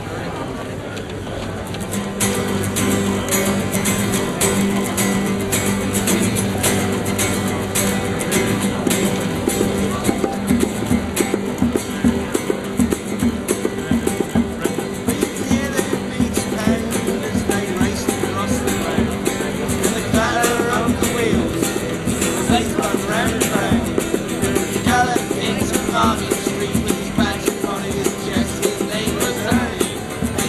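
Acoustic busking band playing a song intro: two acoustic guitars start strumming about two seconds in, a hand drum joins with steady beats around ten seconds in, and a voice comes in singing in the latter part.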